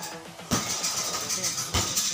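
Kicks landing on a heavy punching bag: two thuds about a second apart, over background music.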